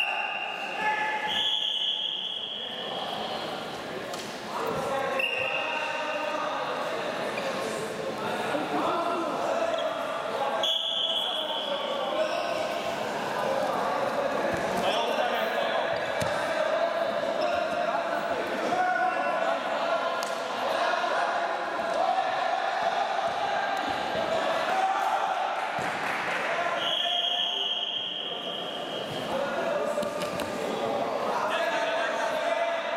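Freestyle wrestling bout in a large, echoing sports hall: coaches and spectators shouting, thuds of bodies and feet on the mat, and four shrill referee whistle blasts of a second or two each, spread through the bout.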